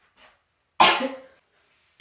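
A young woman coughs once, a single short, loud cough about a second in.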